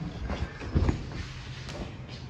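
Camera handling rustle and a few soft knocks over a low rumble, as a person climbs out of a car.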